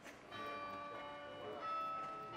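Bells ringing: struck tones that ring on and fade slowly, one about a third of a second in and a higher one about a second and a half in.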